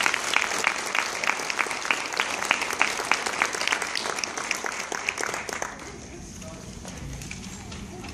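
Audience applauding in an auditorium after a jazz band's performance, thinning out and dying away about six seconds in.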